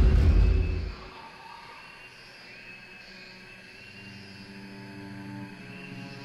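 Dramatic documentary soundtrack: a deep rumble that drops away about a second in, leaving quiet, held, sustained tones.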